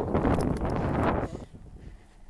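Wind buffeting the microphone: a loud, gusty rumble that drops away after about a second and a half.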